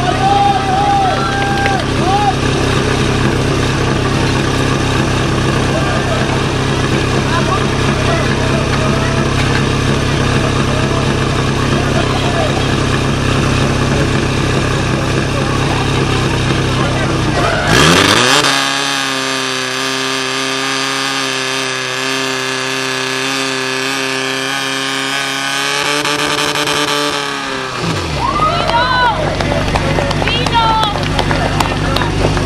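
Portable fire pump engine running, revving up sharply about two-thirds of the way in, holding a higher steady pitch for several seconds, then dropping back near the end. Voices shout over it at the start and end.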